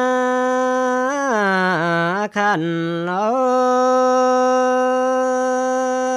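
A man singing a Dao-language song solo, holding long steady notes with slow dips in pitch and taking a quick breath about two seconds in.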